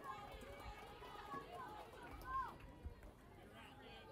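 Faint, distant voices of players and spectators calling out around a softball field, with one voice briefly louder a little past halfway.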